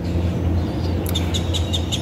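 A bird chirping in a rapid, even run of short high chirps starting about a second in, over a steady low hum.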